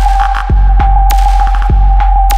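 Instrumental stretch of a future bass electronic track: a heavy sustained sub-bass, with kick drums and sharp snare hits alternating about every 0.6 seconds. A single high synth note is held over it.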